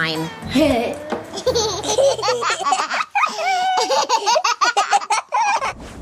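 A young boy laughing in a long run of high-pitched giggles.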